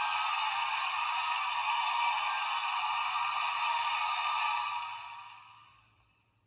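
Studio audience cheering and applauding, played back through a computer's small speaker so it sounds thin with no bass. It holds steady, then fades out over the last second and a half.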